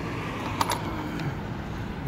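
Ignition key turned in an ATV's key switch: a few short clicks and a jingle of keys about half a second in, over a steady low background noise.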